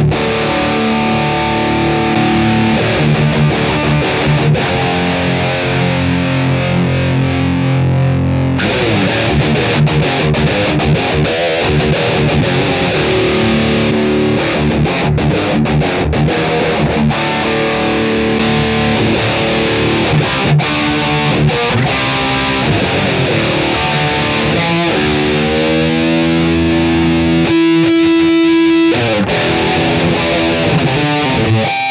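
Distorted electric guitar played through an overdriven Tone King Sky King tube amp, with a Boss EQ-200 graphic EQ switched on in the effects loop shaping the tone. Held chords ring for the first several seconds, then single-note lead lines follow, ending in a rising string bend and a long held note near the end.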